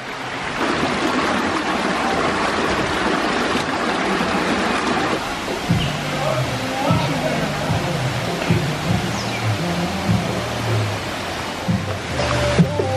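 Steady rush of a stream cascading over rocks. About halfway through, background music with a moving bass line comes in over the water.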